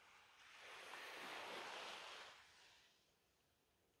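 Faint wash of a small sea wave, a soft hiss that swells and fades away over about two seconds.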